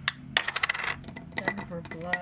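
Small hard makeup cases and compacts clinking and clattering against each other as products are picked through. A quick run of clicks with a short ring comes about a third of a second in, and a few more clicks follow past the middle.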